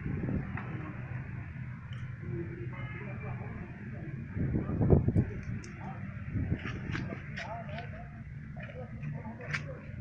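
Indistinct background voices over a steady low hum, with a brief loud low rumble about five seconds in and a few light clicks near the end.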